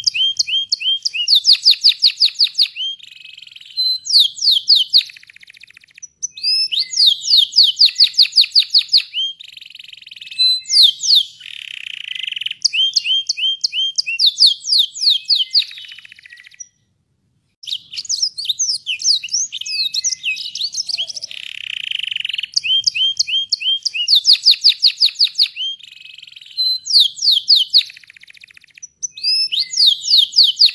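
Domestic canary singing in long rolling trills: fast runs of repeated notes that change pattern from phrase to phrase, with a brief pause about halfway through.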